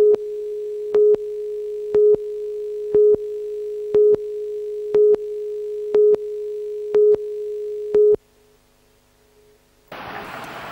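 Videotape countdown-leader tone: one steady mid-pitched tone with a louder beep on every second, nine in all, as the clock counts down from ten. It cuts off suddenly just after the eighth second.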